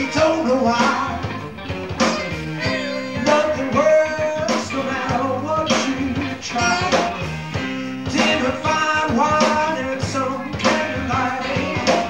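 Live blues band playing with a steady beat, guitar to the fore.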